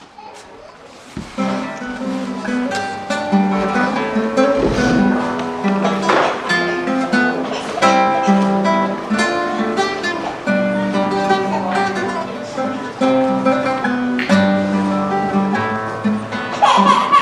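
Nylon-string classical guitar playing a fingerpicked instrumental introduction, single notes over a repeating bass pattern with an occasional strummed chord. It starts softly and grows louder over the first second or two.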